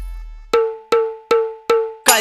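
A break in a Bollywood–Timli DJ remix: the low bass of the mix fades out, then four short, evenly spaced metallic percussion hits like a cowbell sound at about two and a half a second, each ringing briefly at one pitch.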